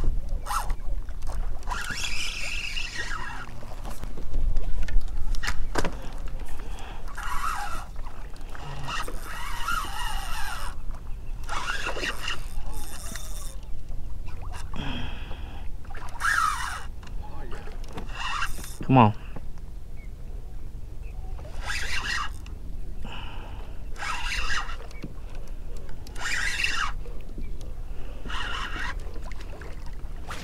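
A hooked red drum thrashing and splashing in shallow water during the fight, in short bursts every second or two, over a steady low rumble of wind on the microphone.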